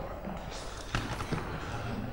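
A few footfalls and knocks on a rubber sports-hall floor, the clearest about a second in, with faint voices in the hall.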